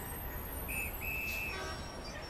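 Traffic officer's whistle blown twice, a short blast then a longer one, over a low rumble of city traffic.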